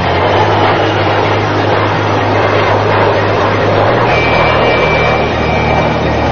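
Jet aircraft engines, a loud steady rush as a pair of display jets fly overhead, with music's low bass notes underneath that change about four seconds in.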